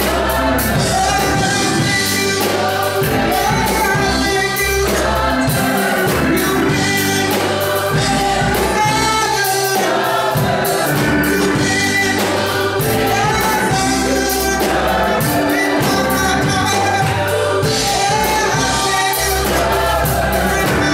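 Gospel choir singing with a live band: a bass line and a drum kit with cymbals keeping a steady beat.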